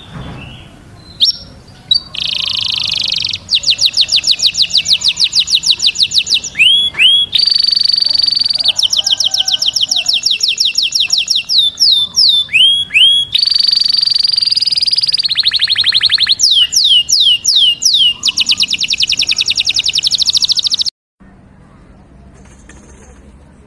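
A yellow domestic canary singing a long, loud song: fast trills of rapidly repeated notes, each run switching to a new one, with a few sweeping whistled notes between runs. The song cuts off suddenly near the end.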